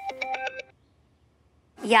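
Mobile phone ringtone, a melody of clean electronic notes, cutting off less than a second in as the call is answered.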